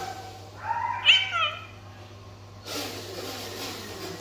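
A single short cry about a second in, its pitch rising and then falling, over a steady low hum.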